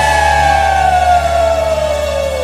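Live rock band's final held chord sliding slowly and steadily down in pitch over a steady low bass note, with no drums.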